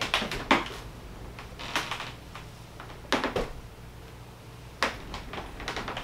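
A few soft, separate clicks and rustles spread through the quiet: handling noise from a rolling office chair being pushed back and a dress being held up.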